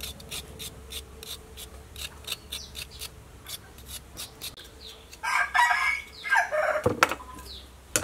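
Short knife strokes scraping the skin off a fresh root, about three or four a second. About five seconds in, a rooster crows loudly in two parts, the call falling steeply in pitch at the end.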